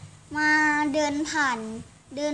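A young boy's voice, drawn out in a sing-song: a held note about a third of a second in, then pitch sweeps and a slide downward near the end.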